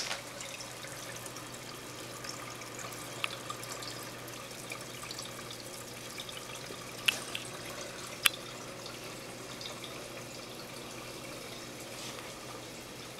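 Reef aquarium's circulating water trickling steadily, with a faint low hum under it. A few sharp clicks stand out, the loudest about seven and eight seconds in.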